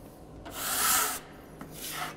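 Metal scraper blade dragged across a tabletop, spreading a thin concrete overlay coat: one long scraping stroke about half a second in and a shorter one near the end.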